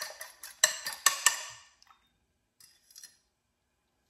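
A fork beating a raw egg in a small ceramic bowl: quick clicking taps of metal on the bowl for about the first second and a half, then stopping, with a few faint taps later on.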